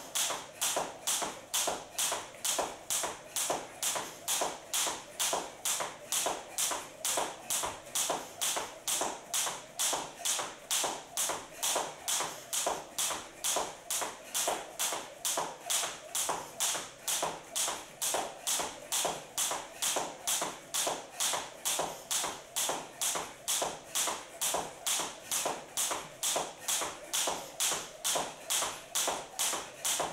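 Jump rope slapping a wooden floor in a steady rhythm, about two strokes a second, as the skipper hops with high knees.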